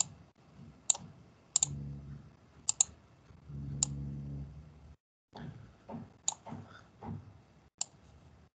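Computer mouse buttons clicking: a handful of sharp clicks at uneven intervals, two of them in quick pairs, as a connector line is grabbed and dragged in a diagram editor.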